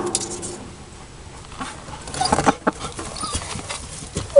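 A hen shifting and scratching in the hay of a wooden nest box, with a few short clucks.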